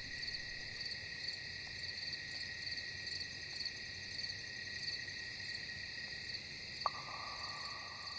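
Crickets chirring steadily, a high pulsing night-time chorus. A faint click comes about seven seconds in, and a second, lower steady trill joins it.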